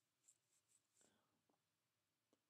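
Near silence, with about five very faint, short rustles and ticks in the first second and a half.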